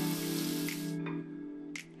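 Tap water running into a bathroom sink as a face is rinsed with cupped hands; the water sound cuts off abruptly about a second in. Background music with a held chord plays throughout.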